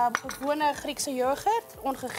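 Mostly talking, with a few light clinks of ceramic bowls and spoons being handled.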